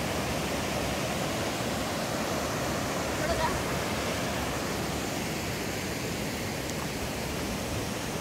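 Small waterfall cascading over rocks into a pool: a steady rush of water.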